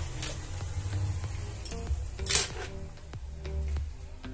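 Background music, with light clicks and clatter of small hand repair tools (spudger, tweezers, screwdrivers) being set down and rearranged on a silicone work mat; one louder clatter a little over two seconds in.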